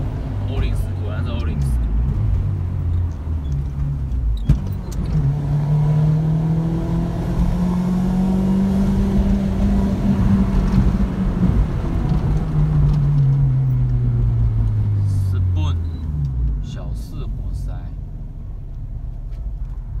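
Honda Integra DC5 (Acura RSX Type S) K20A inline-four, fitted with an aftermarket exhaust and a Mugen intake, heard from inside the cabin as it pulls up through the revs for about five seconds, then sinks in pitch as the driver eases off. A sharp click comes about four and a half seconds in.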